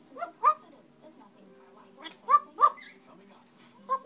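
African grey parrot calling: two quick pairs of short, loud, rising yelps, one pair near the start and one just past the middle.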